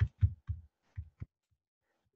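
Keys being pressed on a Casio scientific calculator lying on paper: about six short taps, unevenly spaced over a second and a half.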